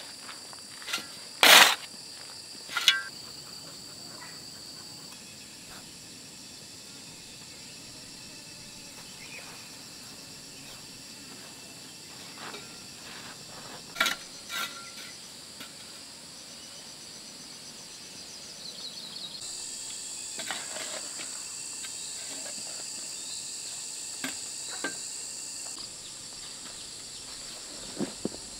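Steady high chirring of insects, broken by a few sharp knocks of a metal hoe blade striking stony soil. The loudest knocks come about a second and a half in, and a pair comes around fourteen seconds.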